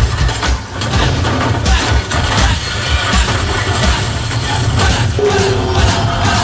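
Soundtrack music with a heavy bass beat, played from a DVD on a Pioneer AVIC-N2 head unit through the car's speakers. A steady tone comes in near the end.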